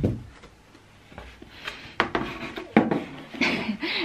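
A few sharp knocks and light scrapes from a cardboard box being handled by a toddler, with a brief voice sound near the end.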